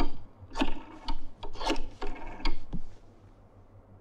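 Rotary telephone dial being turned and spinning back for several digits in a row, a short rasping whirr for each, stopping about three seconds in.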